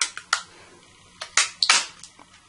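Stampin' Up! Owl Builder hand punch clicking as it is worked on black cardstock: three sharp clicks at the start and a quick run of four more about a second and a half in.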